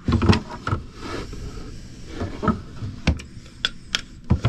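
Drawers of a wooden cabinet being tugged and bumped by a small child, making a string of irregular knocks and clicks from the wood and the metal drawer pulls.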